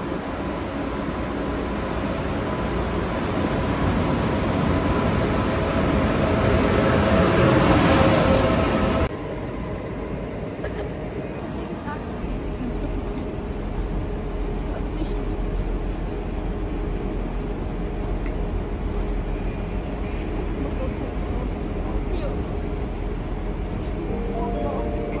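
ICE high-speed train pulling into a station platform: a rumbling, hissing run that grows louder for about eight seconds and then cuts off abruptly. After that, quieter steady platform ambience with voices.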